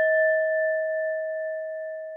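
The ringing tail of a single bell-like timer chime, one clear tone with a few higher overtones, slowly dying away.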